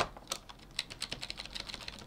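Computer keyboard arrow key tapped repeatedly, several faint clicks a second, to nudge a selected shape in Flash, with a louder click right at the start.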